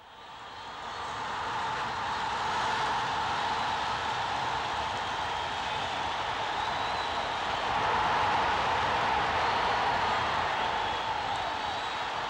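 Roar of a large football stadium crowd, a steady mass of voices with faint chants and whistles in it. It fades in over the first two seconds and swells a little about eight seconds in.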